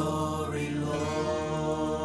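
A man singing one long held note over musical accompaniment.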